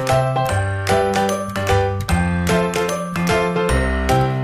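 Cheerful background music: quick, bright chiming notes over a steady bass line in a regular rhythm.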